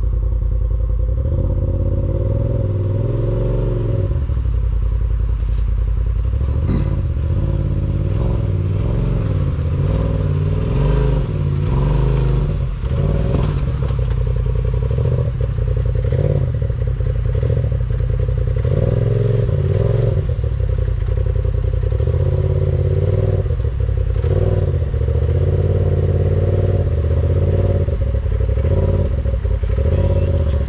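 Side-by-side UTV engine running and revving up and down in short bursts as the machine crawls down a steep rock ledge, with occasional knocks and scrapes of tyres and chassis on the stone.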